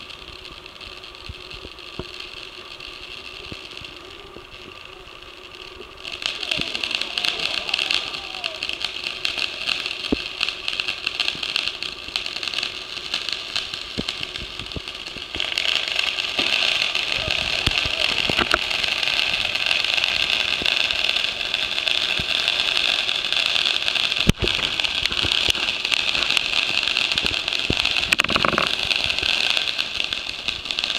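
Ground fountain fireworks spraying sparks with a steady hissing crackle. The sound steps up about six seconds in and again just past the middle, as more fountains burn at once.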